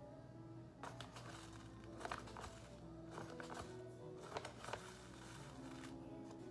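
Quiet background music with a scatter of short clicks and taps from a wooden spoon in a glass bowl as raw chicken and red pepper powder are stirred, the taps grouped through the middle seconds.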